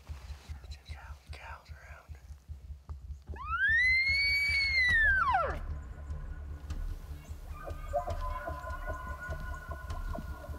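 Bull elk bugling: a single high whistle that rises and then falls, starting about three seconds in and lasting about two seconds. Fainter steady tones follow near the end over a low rumble.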